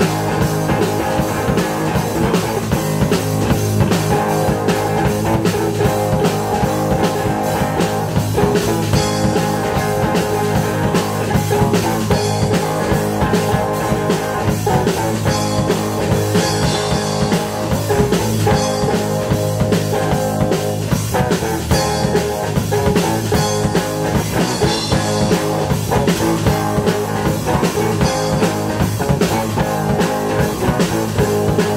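Live rock band playing an instrumental passage: distorted electric guitar over bass guitar and a drum kit keeping a steady beat, loud and unbroken.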